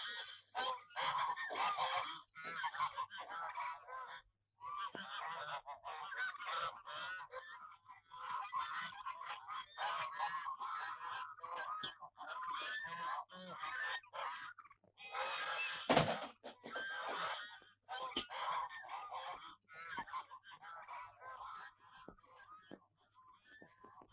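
Geese honking and cackling as a flock, in bursts with short gaps. A sharp knock stands out about two-thirds of the way through, and a lighter one follows two seconds later.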